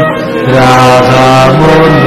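Men's voices singing a slow Hasidic niggun, with long held notes that step from one pitch to the next.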